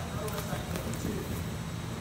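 Faint voices over a steady low hum, with a few light scuffs and taps of wrestling shoes on a mat as a low single-leg takedown is hit at speed.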